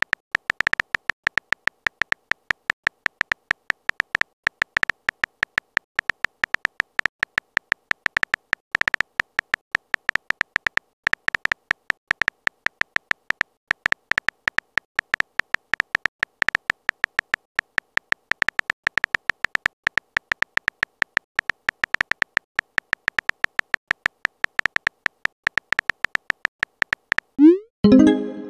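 Keyboard typing sound effect of a texting-story app: rapid, uneven short high ticks, several a second, one per letter typed, with brief pauses between bursts.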